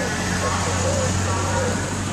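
Street traffic: a car driving past with a steady low engine hum, over indistinct voices.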